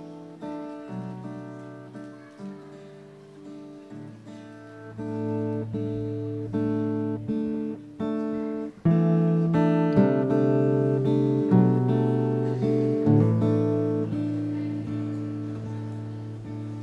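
Acoustic guitar picked in a steady pattern of ringing notes, quiet at first and louder from about nine seconds in.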